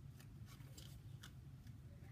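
Faint, scattered ticks and swishes of Pokémon trading cards being slid from the front to the back of a freshly opened pack's stack in the hands, over a steady low hum.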